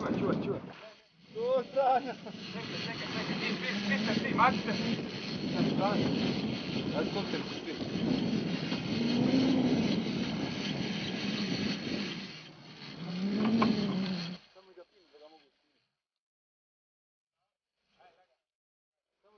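A steady rush of wind and sea noise on a boat at open sea, with men's voices calling out over it now and then. The sound cuts off suddenly about fourteen seconds in.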